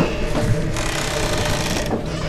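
Buzzing, stuttering static of a digital video-glitch sound effect. The noise changes abruptly a little under a second in and breaks off just before the end.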